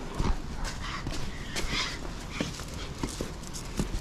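Footsteps on stone paving and concrete steps, an irregular run of hard clicks and knocks, with plastic shopping bags rustling.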